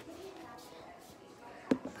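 A quiet room with faint rustling from a handheld phone moving about, and one sharp click near the end, just before a child starts speaking again.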